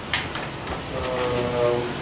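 A man's long, drawn-out 'uhh' of hesitation, held on one steady pitch through the second half. It comes just after a brief rustle of paper.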